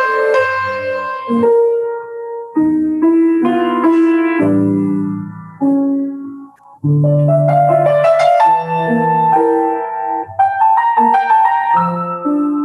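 Grand piano played solo: a melody over chords, in phrases separated by two short breaks.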